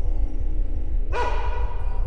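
Tense film background music over a low drone, with a sudden sustained pitched tone, rich in overtones, coming in about halfway and held to near the end.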